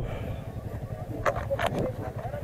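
Motorcycle engines idling in a low, steady rumble, with a few faint brief voice fragments about a second and a half in.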